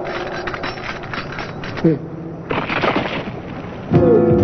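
Cartoon sound effects: a rapid crackling clatter of sharp knocks for about two seconds, then a rushing, noisy stretch with a voice crying out, cut off just before music starts.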